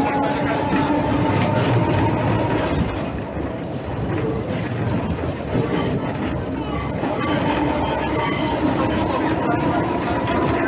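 N3-type tram running along the track, heard from on board: a steady rumbling running noise with a faint steady whine, and brief high-pitched squeals from the wheels on the rails in the second half.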